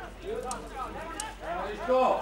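Men's voices calling and shouting during a football match, several short calls, quieter than the shouting around them.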